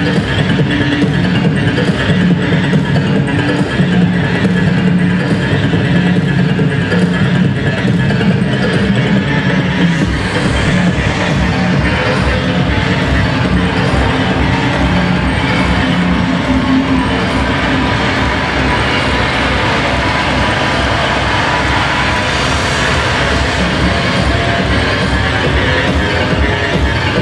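Loud live electronic breakbeat music played over a concert PA. About ten seconds in, the held bass notes give way to a heavier, dense low beat.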